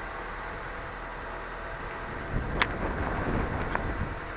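Wind buffeting the camera microphone: a low rumble that picks up about halfway through, with two short sharp clicks.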